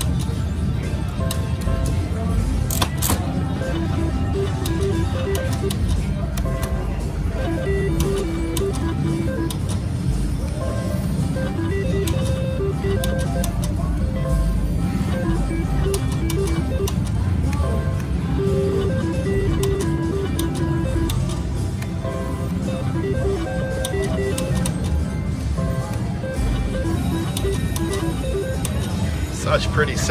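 Casino floor din: electronic slot-machine tunes and beeps repeating over a steady murmur of voices, with a few sharp clicks.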